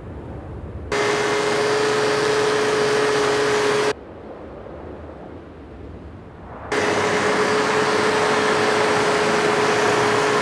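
Snowmobile engine running at a steady speed: one high, steady tone over loud hissing track-and-snow noise. It cuts in abruptly about a second in, drops out suddenly near the four-second mark to a low rumble, and cuts back in after six and a half seconds.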